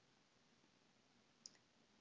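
Near silence with a single faint computer mouse click about one and a half seconds in.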